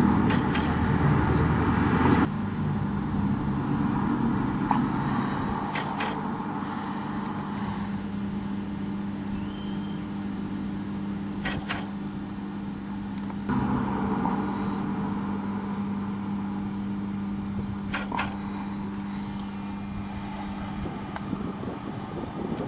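A steady low mechanical hum, one pitch with its overtones, that changes about two seconds in and again about halfway, with a few faint clicks.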